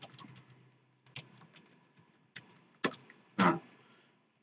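Computer keyboard keys being typed: a few scattered, faint keystrokes, with two louder clicks near the end.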